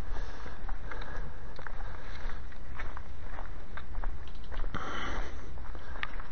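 Footsteps on a dry dirt and stony trail, heard as scattered light crunches and clicks, over a steady low rumble on a body-worn camera's microphone. There is a brief hiss about five seconds in.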